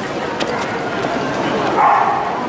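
Dogs barking over the steady chatter of a crowd.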